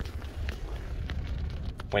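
Handling noise of a phone being moved around a car's interior: faint rustling and small scattered clicks over a steady low rumble.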